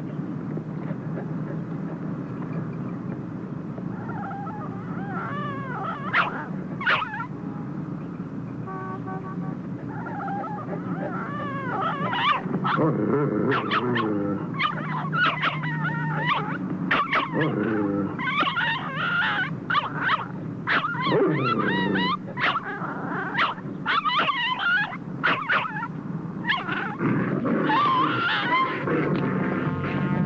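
Two dogs fighting: a small terrier yelping and whimpering in high, wavering cries while a Doberman growls. The yelps begin a few seconds in and come thick and fast from about twelve seconds on, over a steady low hum.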